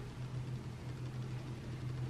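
Steady low hum with a faint hiss: the background noise of a quiet room.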